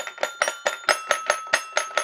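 Little Tikes Jungle Jamboree Tiger toy piano-xylophone playing a quick, even run of bell-like notes, about six a second, with one high note ringing on through them.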